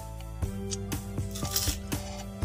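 Background music with a steady beat, about two beats a second, over held chords that change every beat or two.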